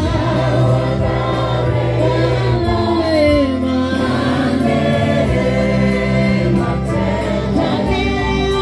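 A choir of many voices singing a gospel worship song, over steady sustained low instrumental notes.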